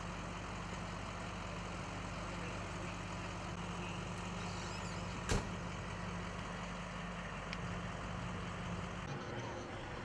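Emergency vehicles idling: a steady engine rumble with a low hum. A single sharp knock sounds about five seconds in, and the rumble thins out near the end.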